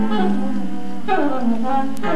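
Improvised saxophone and electric guitar playing together: a held low note, then sliding, falling pitches about a second in.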